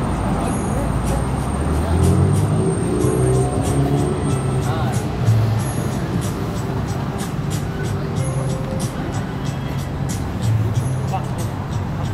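Busy city street at night: traffic passing, with voices of people walking by and music in the background.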